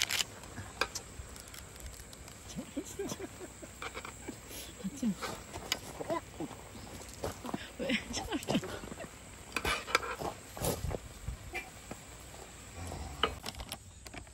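Scattered light clicks and scrapes of metal tongs against a cooking pan as instant noodles are stirred in their black-bean sauce, with a few brief bits of voice.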